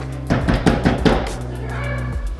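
A quick run of knocks on a front door, several strikes in about a second, starting a moment in and louder than the steady background music.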